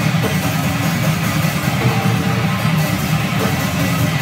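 Electric guitar and drum kit playing death metal together, loud and unbroken, recorded live in the room.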